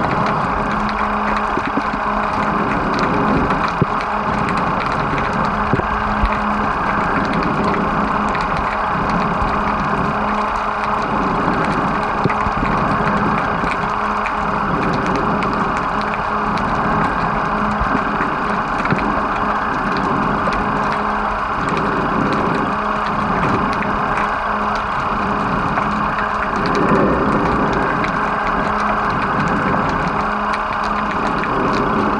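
Steady, muffled underwater noise picked up by a camera held under the water, with a faint low hum running through it, a slow rise and fall every couple of seconds and scattered small clicks.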